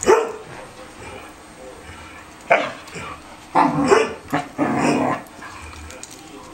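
Dogs barking during a rough play-fight: one sharp bark at the start, then a run of longer, louder barks from about two and a half to five seconds in.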